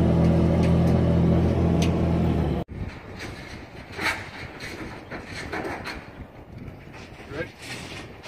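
A vehicle engine running steadily at a constant pitch, cut off abruptly about two and a half seconds in. After that comes a quieter outdoor background with faint distant voices.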